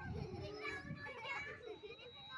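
Young children's voices chattering and calling out, several at once, in group play.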